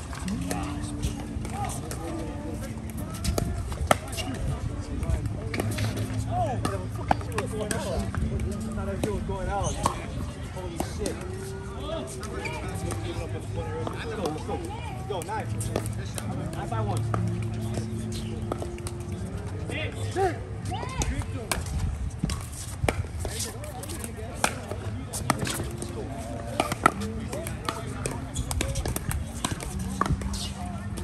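Background voices and music around a pickleball court, with scattered sharp pops of paddles striking the ball.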